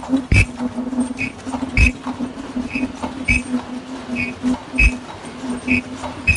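Fully automatic face-mask production line running: a steady hum under a regular cycle of a sharp knock about every one and a half seconds, each cycle marked by short high-pitched tones.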